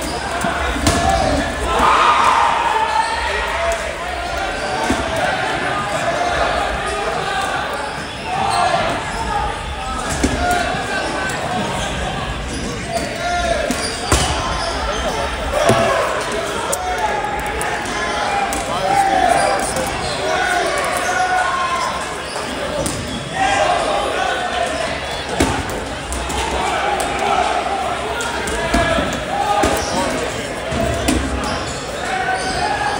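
Balls bouncing on a hardwood gym floor, sharp thuds repeated at irregular intervals, echoing in a large hall over a continuous babble of voices.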